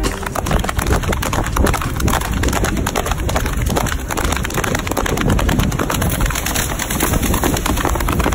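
Wind buffeting the microphone of a camera carried alongside a cantering horse, with breaking surf: a loud, rough, unbroken rush.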